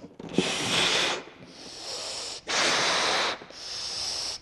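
A person blowing up a latex balloon by mouth. There are two long, loud breaths of air into the balloon, about half a second in and near the middle, with quieter breaths drawn in between.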